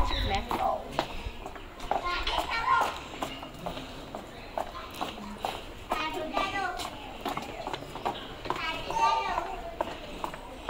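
Footsteps of several people walking on a tiled walkway, a run of short clicks, with people talking as they walk.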